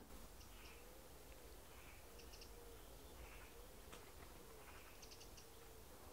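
Near silence with faint distant birds: a low call repeating in short arching notes, and a few faint high chirps and clicks.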